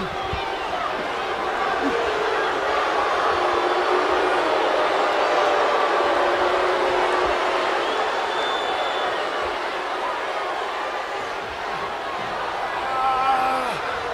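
Arena crowd noise: a steady din of many voices, with individual shouts standing out from it, and a few louder voices near the end.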